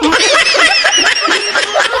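Several people laughing at once: high-pitched giggles and snickers in overlapping voices.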